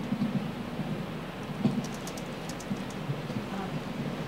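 Room noise of a lecture hall in a pause, with faint rustling and a short run of small clicks about halfway through.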